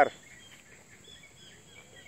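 Faint outdoor background: scattered short, high bird chirps over a steady high-pitched drone.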